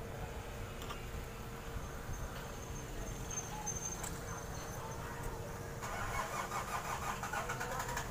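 DB amplified speaker humming steadily with its power on. This is the abnormally loud hum being traced, though no offset voltage is found at the speaker output. A rapid crackle comes in over the last two seconds.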